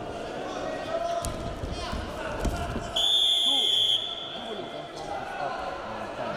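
A wrestling referee's whistle blown once, a steady high note held for about a second, stopping the action. A couple of thuds of bodies hitting the mat come before it, with hall voices behind.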